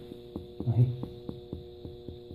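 Finger-on-finger percussion of the lower left chest over Traube's space: a quick series of light taps, about three a second, giving the tympanic note of gas in the stomach under that area.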